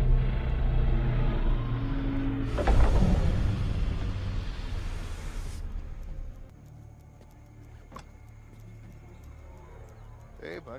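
Sci-fi spacecraft engines as a film sound effect: a deep rumble with steady humming tones, and a loud rushing hiss from about two and a half to five and a half seconds in as the craft sets down. It then dies away to a faint low hum with a few light clicks.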